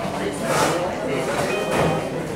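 A sheet of paper rustling as it is handled and set down, with voices in the background.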